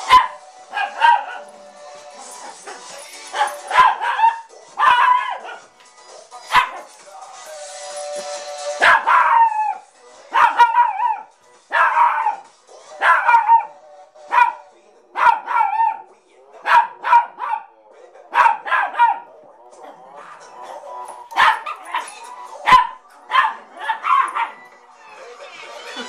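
Poodle barking again and again in short, sharp barks, roughly one or two a second, at the pop song that is playing.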